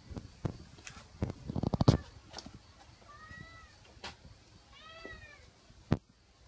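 A domestic cat meowing twice, two short calls that rise and fall, about halfway through and again near the end, in greeting at the door. Before that, a run of sharp knocks and clatter, densest and loudest about a second and a half in, and one more knock at the very end.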